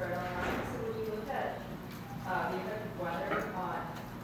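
Faint, off-microphone speech: a student in the audience asking a question, quieter than the lecturer's miked voice.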